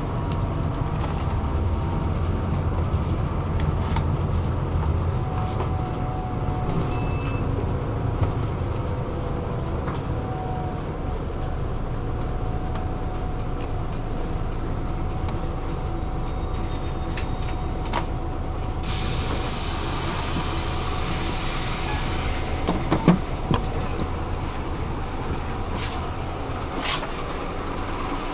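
Inside a moving city bus: steady low engine and road rumble with a faint whine. About 19 seconds in, a hiss of compressed air starts and lasts several seconds, with a short squeal and a couple of knocks a few seconds later.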